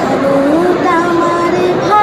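A girl singing solo into a handheld microphone, amplified through a loudspeaker: a short rising phrase, then one long held note that falls away near the end.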